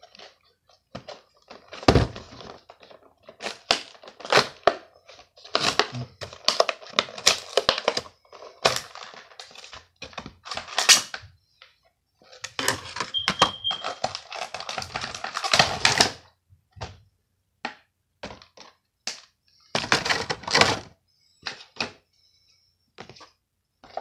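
Action figure's clear plastic blister pack and cardboard backing card being pulled apart and handled: irregular bursts of crinkling, crackling plastic with clicks and knocks, and one sharp thunk about two seconds in.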